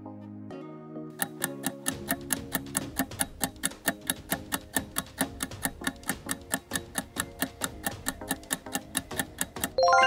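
Quiz countdown-timer sound effect: fast, even clock-like ticking, several ticks a second, over soft held background chords. The ticking stops abruptly near the end as a bright chime sounds.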